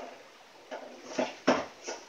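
Hands working hair into a puff on top of the head: four short rustles about half a second apart.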